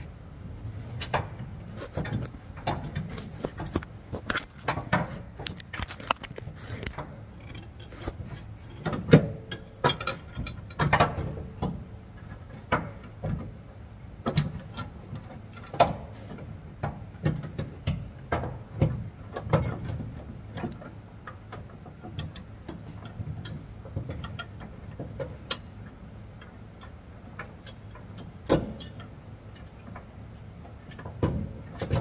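Irregular metal clicks and knocks as a towing-airbag mounting bracket is pushed and wiggled by hand against the truck's leaf spring, being forced into alignment. A steady low hum runs underneath.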